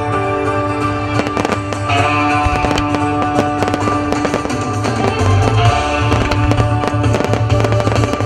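Fireworks going off in quick succession, many sharp bangs and crackles, over music played for a fireworks show set to music. The bass grows heavier about five seconds in.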